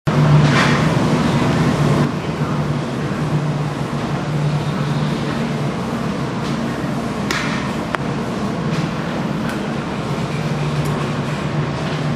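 A steady low hum over an even background noise, with a few sharp clicks in the second half.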